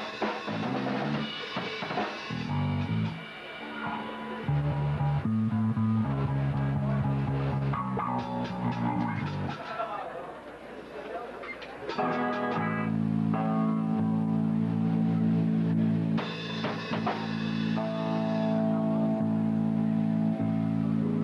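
A post-hardcore band playing live: electric guitar, bass and drum kit. The band drops back briefly about ten seconds in, then comes back in louder about two seconds later with held chords.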